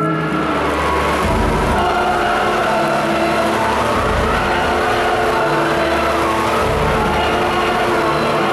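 Theatre blizzard effect: a loud, steady rush of wind-machine noise with a deep rumble that swells a few times. It takes over abruptly from the music at the very start.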